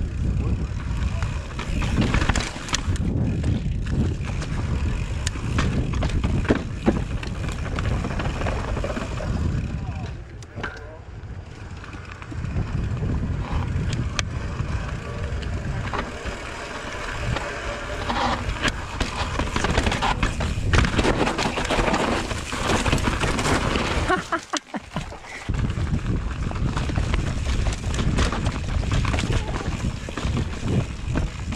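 Mountain bike riding downhill over rock slabs and dirt trail: a continuous rumble of tyres and wind on the camera microphone, broken by frequent small knocks and rattles from the bike, easing briefly twice.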